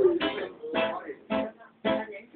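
Acoustic guitar strummed in a steady rhythm, about two chords a second.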